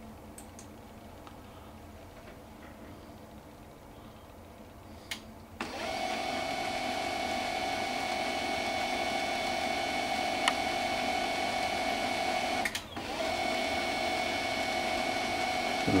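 HP LaserJet P1006 laser printer warming up after a print command. After about five seconds of quiet and a small click, its motor starts suddenly and runs steadily with a constant whine, breaking off briefly for a moment near the end before running on.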